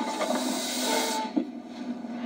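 Film trailer sound design: a hiss over a low held tone, with the high part of the hiss dying away about halfway through.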